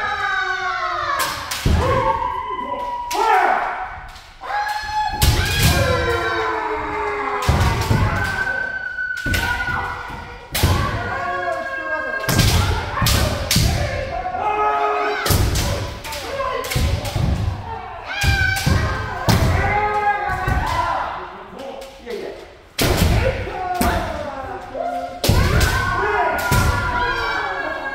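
Kendo sparring: several kendoka shouting long, drawn-out kiai while bamboo shinai strike armour and feet stamp on the wooden floor in quick, repeated sharp hits.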